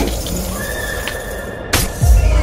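A trailer sound effect of an animal-like cry dying away, then a held high tone, then a single sharp crack near the end.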